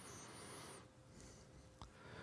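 Near silence: room tone with a faint steady hum, a soft hiss lasting under a second at the start and a faint click near the end.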